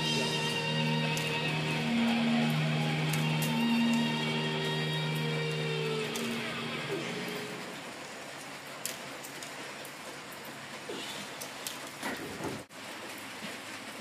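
Guitar music with long held notes for the first six seconds or so, then fading out; after that, a steady hiss of rain falling on the building, with a few faint clicks.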